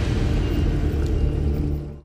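A low, steady rumble that fades out just before the end.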